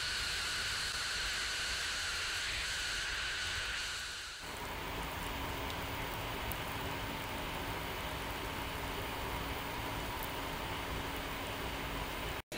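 Water boiling in a glass jar on a submerged string of solar-powered semiconductor diodes used as a heating element: a steady hiss of bubbling. About four seconds in, the sound changes to a fuller, lower hiss with a faint steady hum under it.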